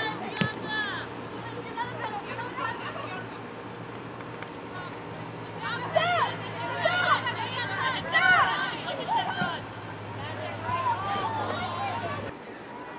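Scattered shouts and calls from players and spectators at an outdoor soccer match, loudest a little past the middle, over a steady low hum.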